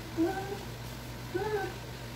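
Two short, whiny moans from a woman straining as she pedals an exercise bike, over a low steady hum.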